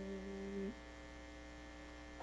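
Steady electrical mains hum in a gap in the music. A low held note with an overtone sounds under the hum at first and ends about two-thirds of a second in.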